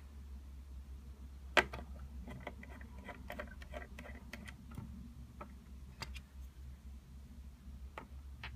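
Small flathead screwdriver clicking and ticking against a screw as it is backed out of a white plastic control-panel faceplate, with a removed screw set down on a wooden tabletop; the sharpest click comes about a second and a half in. A faint steady low hum runs underneath.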